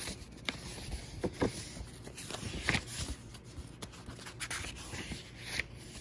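Paper pages of an old book being leafed through, a string of short rustles and flicks scattered across the few seconds as the pages are turned to find a page.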